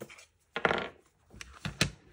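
Hands handling a plastic stamp ink pad case: a brief rub about half a second in, then a few sharp plastic clicks as the case is picked up and opened.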